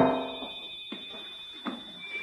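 A keyboard music chord from a scene-change sting dies away over the first half-second. Then it is quiet, with a faint steady high-pitched whine and two soft knocks, one about a second in and one near the end.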